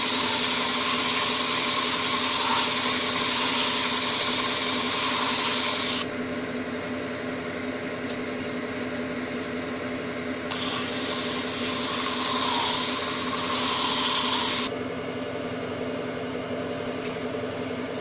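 Wood lathe motor running steadily while abrasive sandpaper is held against the inside of a spinning oak napkin-ring blank, giving a loud hiss for about six seconds. The sanding stops, leaving only the lathe hum, then a narrow turning tool cuts into the spinning oak with a similar hiss for about four seconds before stopping again.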